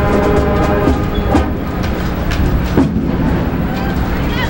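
High school marching band playing a march at full volume: flutes and piccolos, brass and drums together in sustained chords with drum strokes.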